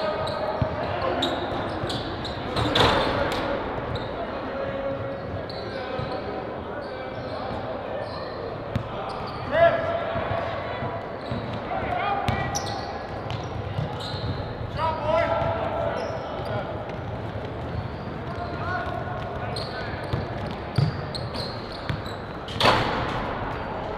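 Basketballs bouncing on a hardwood gym floor, with sharp knocks now and then and players' calls and shouts echoing in the large hall.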